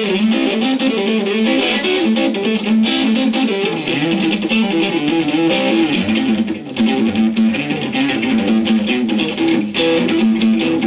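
Stratocaster-style electric guitar playing a fast, continuous run of single notes with hybrid picking, pick and fingers plucking in turn. There is a brief gap in the notes about two-thirds of the way through.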